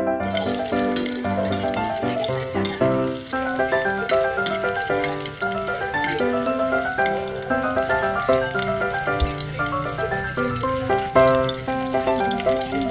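Garlic sizzling in hot cooking oil in a wok, the sizzle starting suddenly as the garlic goes in, under background piano music.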